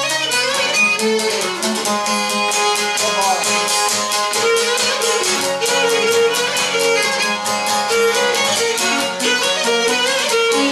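Cretan lyra, the small bowed three-string fiddle, playing a syrtos dance melody over a laouto, the long-necked lute, strummed with a pick in a steady even rhythm.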